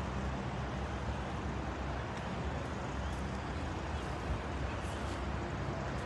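Steady outdoor city ambience: an even, low rumble of distant road traffic with no distinct events.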